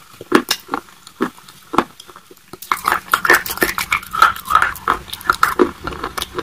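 Close-miked wet chewing of creamy white-sauce penne pasta, with sticky mouth clicks and lip smacks. The smacks are spaced out at first, then come thick and fast from about two and a half seconds in.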